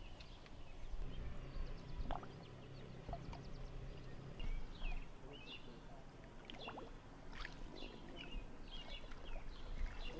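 Outdoor water ambience: water sloshing and lapping, with a low rumble in the first half and short bird chirps in the background from about halfway through.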